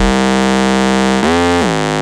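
Electronic trap music at a breakdown: the drums drop out, leaving one sustained, buzzy synthesizer note. About a second in, the note's pitch bends down and back up.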